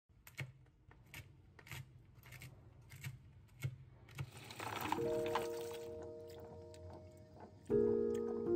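A knife chopping seeds on a plastic cutting board, about seven even chops a little over half a second apart. About four seconds in, a swell of noise gives way to a few held musical notes, with a louder chord near the end.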